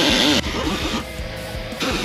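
Background music with guitar, over a pneumatic hand tool's steady hiss that stops about half a second in and starts again near the end.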